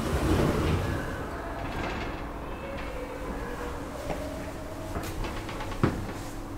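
Schindler 3300 elevator's two-panel side-opening doors sliding open with a low rumble, loudest in the first second, followed by a quieter steady hum. A single sharp knock comes near the end.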